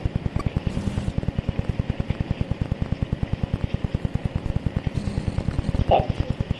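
A low, steady mechanical throb beating about ten times a second.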